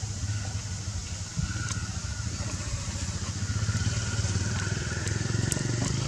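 An engine running steadily with a low rumble and a faint whine, growing a little louder in the second half, with a few faint clicks.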